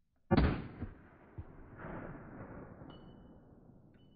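A single .380 Auto pistol shot: one sharp crack, followed by echoes that die away over about three seconds.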